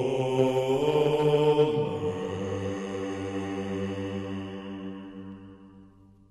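A low male voice chanting in a solemn liturgical style, holding a long note that drops to a lower held note about two seconds in and then fades out near the end.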